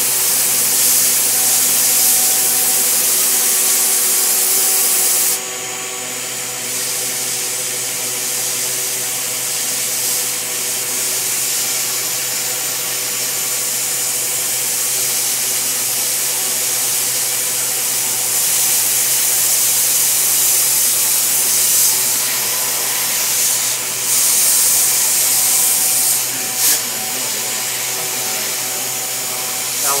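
Milling-machine spindle running and its cutter bit machining through the composite fuselage skin of an ASW 28-18 glider: a steady high cutting hiss over a constant spindle whine. The cutting hiss drops away for a moment about five seconds in and again briefly near 24 seconds.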